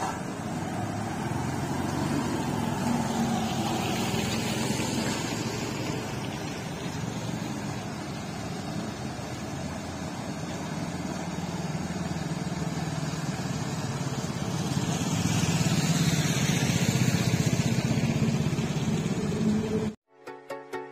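A vehicle engine running as it drives through standing floodwater on the road, tyres throwing up a splashing spray of water. The wash of water and engine swells louder a few seconds in and again near the end.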